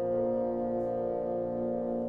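Wind ensemble of clarinets, oboes, bassoons and French horns attacking a chord at the start and holding it steadily.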